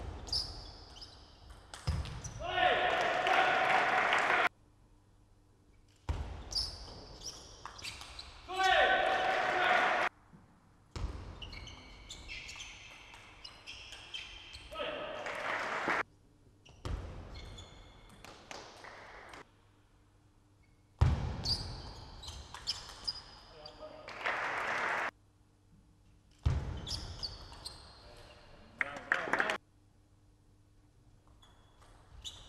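Table tennis rallies in a hall: the celluloid ball clicking off bats and table, in about six short stretches that each cut off suddenly into near silence. Loud shouting comes with some points, notably in the first two stretches.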